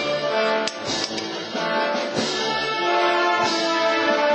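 Procession band playing a Holy Week processional march: held brass chords with a few drum beats.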